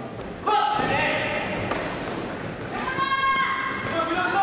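Ringside shouting echoing in a large sports hall, breaking in suddenly about half a second in, with thuds of kicks and punches landing in a wushu sanda bout.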